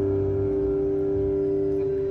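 A live rock band's final chord held and ringing steadily on electric guitars and bass at the end of a song.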